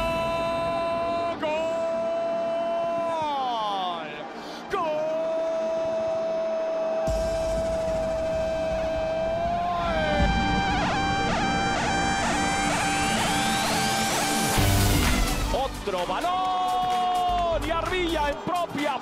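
A football commentator's long drawn-out goal shout, held on one pitch and falling away at the end, then a second, longer held shout after a short break. About ten seconds in, a rising electronic whoosh with rapid ticking sweeps up and cuts off.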